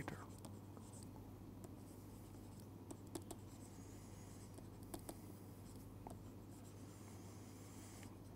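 Near silence: faint scattered taps and scratches of a stylus writing on a tablet screen, over a low steady hum.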